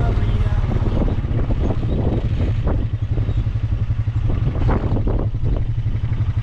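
A 4WD quad bike's engine running steadily at low speed, with a few knocks and rattles as the bike rolls over rough pasture.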